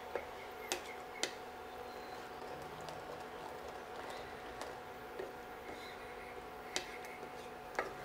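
Wooden spatula stirring a thin, watery curd-and-fenugreek gravy in a stainless steel pan, knocking the pan's rim with a few sharp clicks, twice near the start and twice near the end. A faint steady hum runs underneath.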